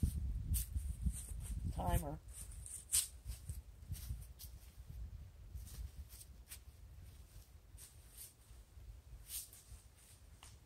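A brief, muffled, wavering voice about two seconds in, over a low rumble that dies away after the first couple of seconds. Scattered faint clicks run throughout.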